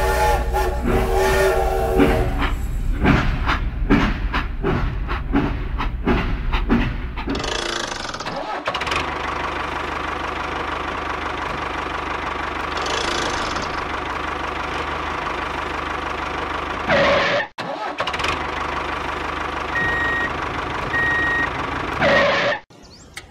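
Small toy motor running. For the first several seconds it comes with irregular clicking and rattling, then it settles into a steady whir that drops out briefly about two-thirds of the way through.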